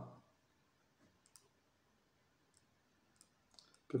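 Near silence broken by a few faint, short clicks of a stylus tapping on a tablet screen while handwriting: one about a second and a half in, then three or four close together near the end.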